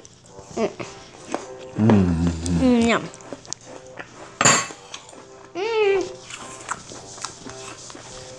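Short voiced "mmh" sounds of someone savouring food, with gliding pitch, over steady background music. There is one sharp clink about four and a half seconds in.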